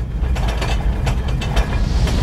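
Deep rumble slowly growing louder, with fast rattling clicks like dishes and glassware shaking on a dinner table.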